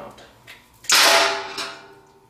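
A screwdriver fumbled in the hand strikes the metal gear motor, making one sharp clack about a second in, followed by a short metallic ring that fades.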